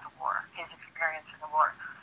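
Speech heard over a recorded telephone call, sounding thin and narrow through the phone line.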